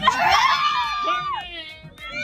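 Loud screaming in astonishment, starting suddenly and trailing off with a falling pitch after about a second.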